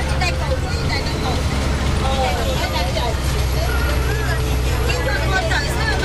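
Steady low drone of a moving road vehicle's engine and tyres, with people's voices talking over it.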